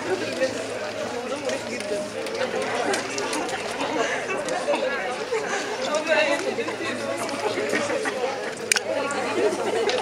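Indistinct chatter of many students talking at once in a lecture hall, a continuous babble of overlapping voices.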